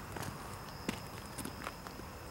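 Steady high-pitched chirring of an insect chorus, with about five sharp clicks or crunches scattered through it, the loudest one a little before the middle.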